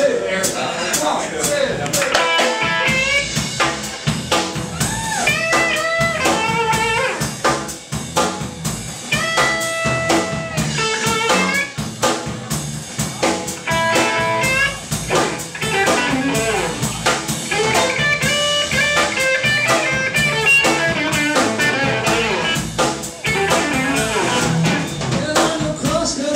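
Live blues-rock band playing an instrumental intro: electric lead guitar phrases with bent notes over bass guitar and drum kit.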